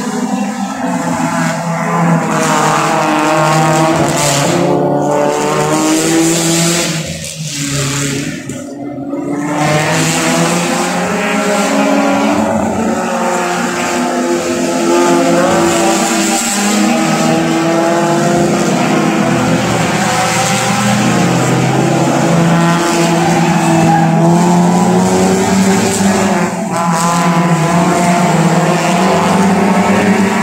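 Several race cars' engines running hard around a circuit, overlapping, their pitch rising and falling as they accelerate and shift. The sound dips briefly about eight seconds in, then builds again.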